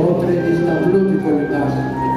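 Live band playing a Greek hasapiko, with keyboard and clarinet. A long high note is held through most of it, with no singing.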